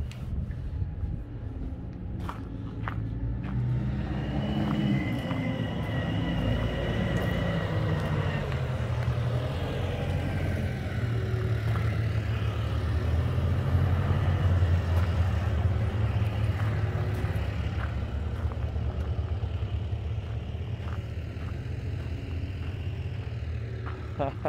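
An engine running steadily, growing louder toward the middle and then easing off, with a high whine for a few seconds near the start.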